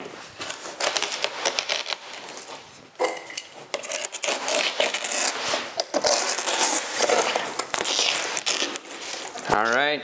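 Old, brittle aircraft wing fabric crackling and tearing as it is cut along the rib stitches with a razor blade and peeled back off the wooden wing, with many sharp clicks and scraping rustles.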